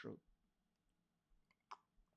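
Near silence with a few faint clicks in the second half, from a headset being handled close to the microphone.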